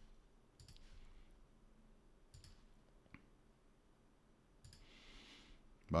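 A few faint, scattered clicks of a computer mouse as a drawing tool is placed on a chart, with a soft hiss about five seconds in.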